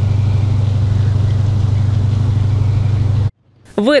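Sand dredge running with a steady low drone while sandy slurry gushes from its discharge pipe; the sound cuts off suddenly near the end.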